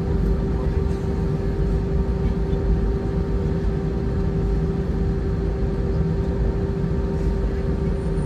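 Cabin noise of an Airbus A319-132 taxiing, heard from inside by the wing: its IAE V2500 engines run at taxi power with a steady hum. Under the hum is a low, even rumble from the aircraft rolling along the taxiway.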